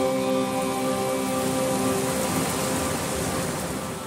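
Torrential rain layered under a slow piece of background music; held, sustained notes ring over the steady rain hiss and fade out in the second half.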